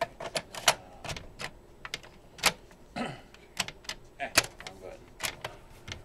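A string of sharp plastic clicks and clacks as cassettes are handled in a Panasonic RX-FM14 boombox's tape deck: a tape lifted out and another slotted in, then the cassette door snapped shut.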